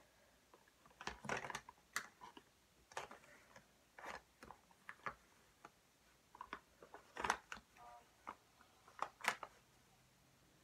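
Faint, irregular clicks and knocks, about one a second, with a quiet background between them.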